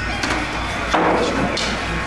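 A pool cue strikes the cue ball, followed by sharp clacks of billiard balls: a few clicks, the loudest about a second in.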